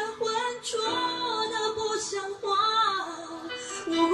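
A woman singing a slow Mandarin pop ballad over instrumental accompaniment, holding and bending long sung notes.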